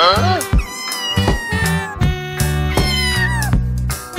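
A cat meows three times over background music with guitar and a steady beat: a short call that rises and falls, then two longer calls that fall in pitch.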